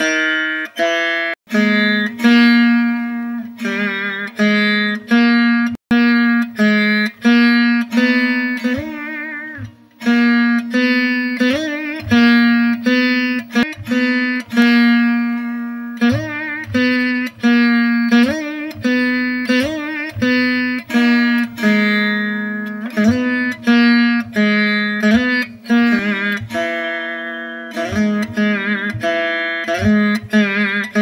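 Saraswati veena played solo: a run of plucked notes stepping through a Carnatic alankaram exercise, some bent and wavering with gamaka slides, over a low drone ringing beneath the melody. The playing pauses briefly about a third of the way in and again around the middle.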